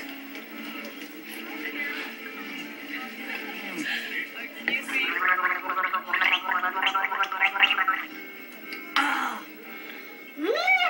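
A woman gargling a mouthful of a cocktail with her head tilted back: a fluttering, voiced gargle of about three seconds starting about five seconds in, over background music and crowd chatter.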